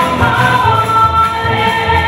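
A mixed group of men and women singing together in chorus, holding notes, with acoustic guitars accompanying.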